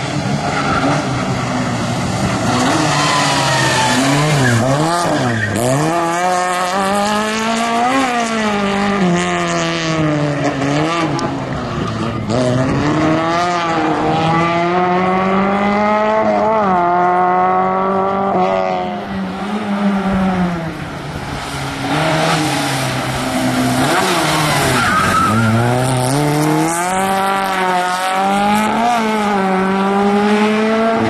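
Autobianchi A112 rally car's four-cylinder engine revving hard, its pitch climbing and dropping over and over as the car accelerates and slows through a tight cone course. It dips in loudness for a moment about two-thirds of the way through, then comes back strongly.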